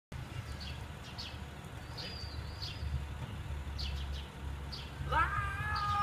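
Small birds chirping, short downward chirps repeating every half second to a second over a low steady rumble. About five seconds in a high-pitched voice rises and calls out.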